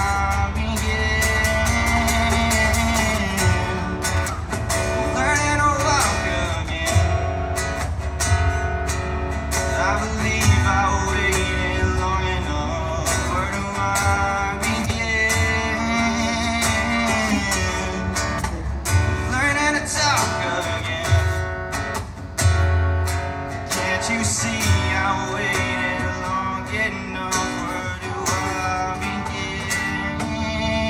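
Live acoustic guitar strumming an instrumental stretch of a song, with a cajón adding occasional deep thumps.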